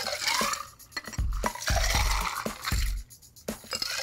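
Ice, muddled mint and bourbon poured back and forth between two glasses to mix a mint julep: ice clinking against glass and liquid sloshing over several pours, with a few low knocks.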